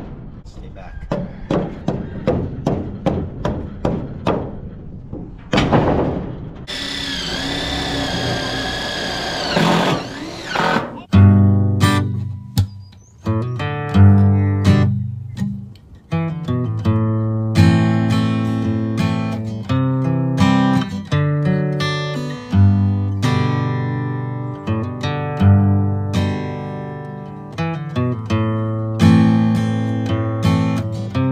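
Short sledgehammer knocking wooden floor boards down onto a steel trailer frame, a quick run of blows. A swelling noise follows, then acoustic guitar music for the last two thirds.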